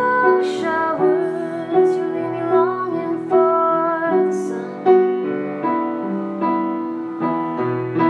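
A woman singing to her own piano accompaniment: slow piano chords struck about once a second, with held, wavering sung notes over them in the first half.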